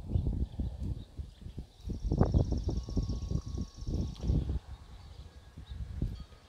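Irregular low thumps and rumbles of wind or handling noise on a wired earphone microphone, with a faint, high, rapid trill for about two seconds in the middle.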